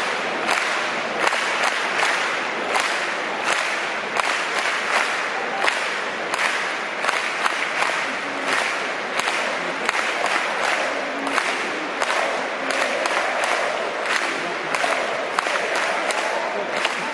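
Stadium crowd applauding, a steady wash of clapping with sharp nearby handclaps standing out throughout.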